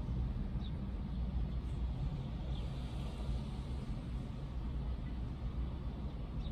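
Steady low vehicle rumble heard inside a parked car's cabin, with a few faint, short high chirps over it.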